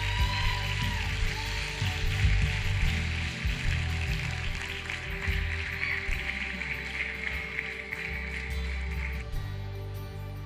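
Audience applause over soft band music with steady held chords and low bass, the applause dying out about nine seconds in.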